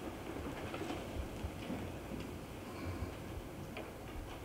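Quiet room tone with a few faint, irregular clicks and soft knocks.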